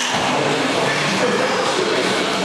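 Steady, loud, noisy room sound with indistinct voices mixed in.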